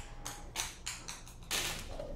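A ping pong ball bouncing on a tiled floor: a run of light, sharp taps that come quicker and quicker.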